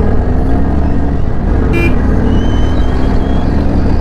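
Motorcycle engine running steadily at low city riding speed, a continuous low rumble. A brief high-pitched beep about two seconds in.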